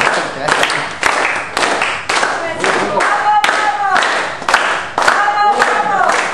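Group hand-clapping in flamenco palmas style, sharp claps about two a second. A voice holds sung or called notes over the claps in the middle and again near the end.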